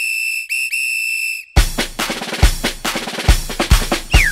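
A whistle blown three times, two short blasts and then a longer one, followed about a second and a half in by a drum-led cha-cha song intro with a steady, heavy beat.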